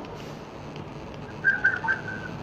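A few short, high whistle-like chirps at a steady pitch, starting about one and a half seconds in, over a faint background hiss.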